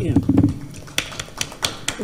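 A brief spoken "yeah", then a run of irregular sharp clicks and knocks, several in under two seconds, like handling noise on a tabletop.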